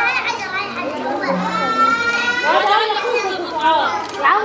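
Children's voices chattering and calling out, with one long, high-pitched shout about a second in.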